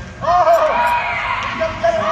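A high-pitched voice calling out loudly, starting about a quarter second in and held with a wavering pitch.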